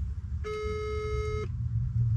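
Telephone ringback tone of an outgoing call waiting to be answered: one steady beep about a second long, at the German 425 Hz ringing pitch, over the low rumble of a car cabin.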